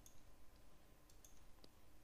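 Near silence with a few faint clicks of a computer mouse, the clearest about three-quarters of the way through.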